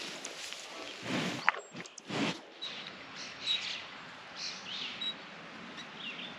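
Open-field ambience: low rustling, swelling briefly a couple of times, with a few short, high bird chirps.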